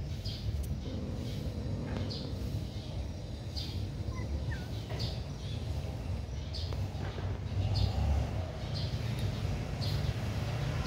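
A bird chirping in short high notes about once a second, over a steady low rumble.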